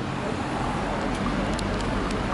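Road traffic: a small car driving slowly past close by, with a steady rush of engine and tyre noise that grows slightly louder.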